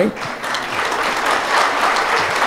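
Audience applauding, a dense, even clapping that builds over the first half second and then holds steady.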